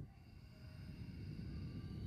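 A long breath blowing onto a headset microphone: a low, rushing rumble that starts suddenly and grows louder. Faint background music underneath.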